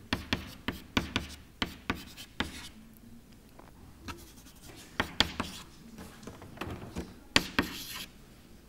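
Chalk writing on a blackboard: a quick run of short taps and scratches as strokes are drawn, a quieter pause of about two seconds in the middle, then another run of strokes.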